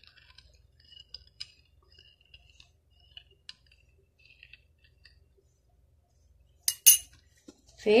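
Metal spoon stirring yogurt starter into warm milk in a ceramic bowl, with light, irregular clinks against the bowl. Near the end come two louder, sharp clinks close together.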